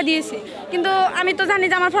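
Speech only: a woman speaking Bengali into a microphone, with a short pause about half a second in and some chatter from people around her.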